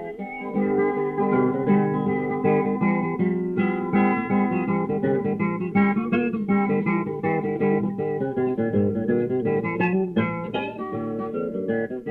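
Guitar playing an instrumental break in a gospel song, a quick run of picked notes over chords with no singing.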